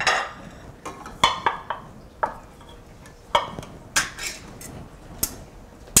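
Metal clinks and knocks as canned tomatoes are emptied from a tin can into a stainless steel stockpot: about eight separate knocks at uneven intervals, a few with a short metallic ring.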